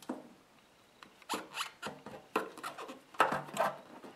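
Chrome dash cover of a motorcycle rubbing and scraping against the fuel tank and its fittings as it is worked into place over the gauges, in several short scraping bursts that start about a second in.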